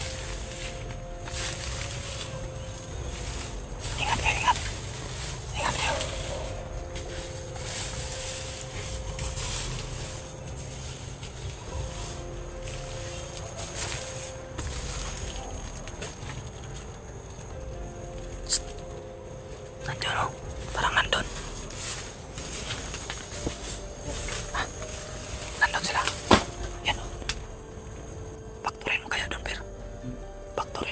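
Faint background music with long held notes. Scattered brushing and crackling of dry leaves comes in clusters a few seconds in and again in the second half.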